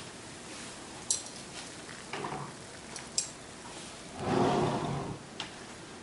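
A couple of light clinks of metal forks against a plate, with a brief soft rustle a little past four seconds.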